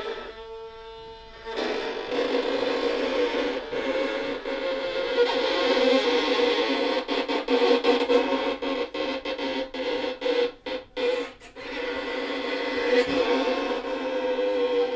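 Two violins bowed together in a dense, sustained texture that clusters around one held pitch. The sound grows louder about a second and a half in. In the second half it breaks into quick, short bow strokes with brief gaps between them.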